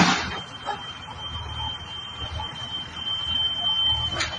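Night demolition by a bulldozer: a sharp bang right at the start, then a steady high-pitched buzzer-like tone over the low, uneven running of a heavy engine.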